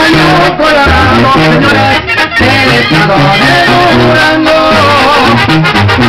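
Live Mexican regional band music, played loud and instrumental, with a stepping bass line under a melody played with vibrato; the sound drops out briefly a couple of times.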